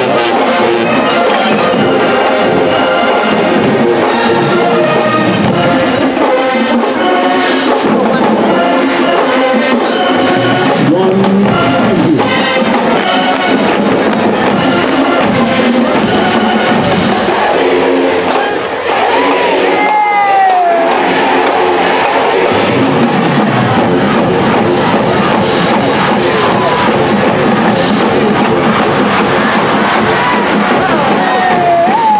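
Marching band playing live in a stadium, brass and drums together, over a cheering crowd. The music dips briefly about two-thirds of the way through, and shouts and whoops from the crowd rise over it.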